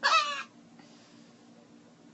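An infant's short, high-pitched squeal that falls in pitch over about half a second, at the very start.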